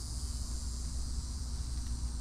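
A steady, high-pitched chorus of insects, with a low steady rumble underneath.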